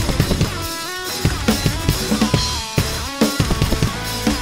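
Acoustic drum kit played with sticks, with steady bass drum and snare strikes and cymbals, over the song's recorded backing music, whose lead line slides between pitches.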